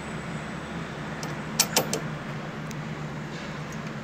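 Two sharp metallic clicks about a second and a half in, close together, from hand work on the outdoor unit's power terminal block as the supply wires are moved. A steady low machinery hum runs underneath.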